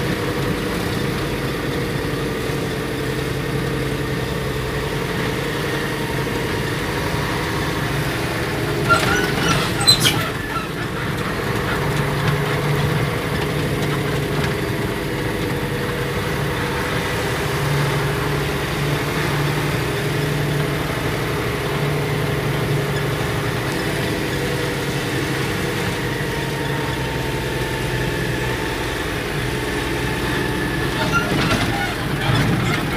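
Engine of the vehicle carrying the camera, running steadily at low speed, heard through the cab. A few sharp knocks or rattles come about nine to ten seconds in.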